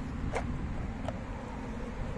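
Steady low rumbling outdoor background noise picked up by a handheld camera, with a couple of faint clicks from the camera being moved.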